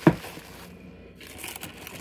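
A sharp knock just at the start, then bubble wrap and a plastic bag crinkling and rustling as they are handled.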